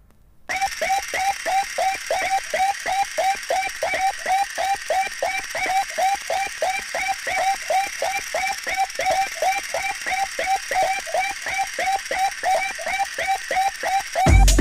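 A sparse electronic loop in a breakbeat DJ mix: a short hooked synth chirp repeats about three times a second, with no bass or drums. It starts half a second in, after a moment of near quiet.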